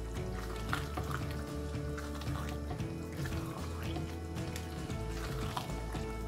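Background music with held notes over a slow-moving bass line. Under it, faint wet sloshing of thick tomato stew being stirred with a wooden spatula in a pan.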